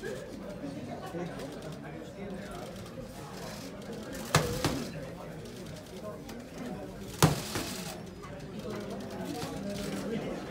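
Boxing-glove punches cracking on a trainer's pads: two sharp cracks about three seconds apart, the first followed quickly by a lighter hit, over the steady murmur of a watching crowd.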